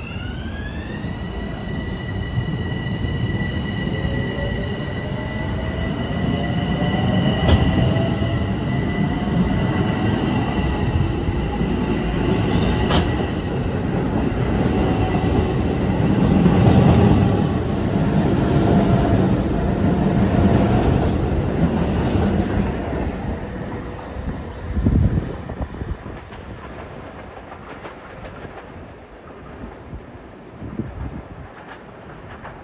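Long Island Rail Road electric multiple-unit train pulling out of the station. Its motor whine rises in pitch as it accelerates, over the rumble of its wheels. The sound fades as the train leaves, with a single knock near the end.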